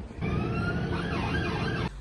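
A siren wailing, one slowly rising tone with other pitch glides crossing it, over a low rumble of street noise; it cuts off suddenly near the end.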